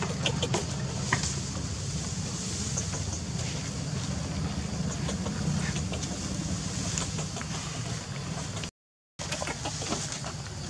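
A steady low, engine-like hum, such as a motor running nearby, with faint scattered clicks and short high chirps over it. The sound cuts out completely for about half a second near the end.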